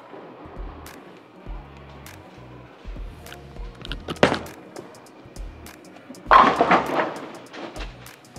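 Hammer Black Pearl urethane bowling ball landing on the wooden lane with a sharp thud about four seconds in. About two seconds later it crashes into the pins in a loud clatter of many hits, the loudest sound. Background music with a steady bass beat plays under it.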